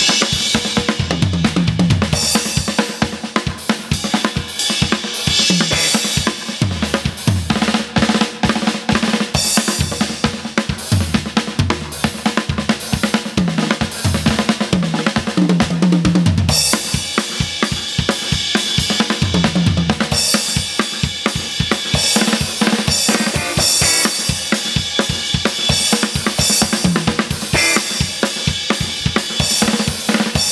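A drum kit played as a solo: fast snare and bass-drum strokes with toms and crashing cymbals. The cymbal wash grows denser about halfway through.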